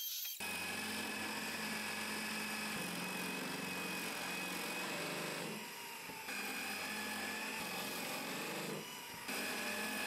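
Benchtop drill press running steadily, its bit boring holes into plywood. It starts abruptly just after the beginning and dips briefly in level twice.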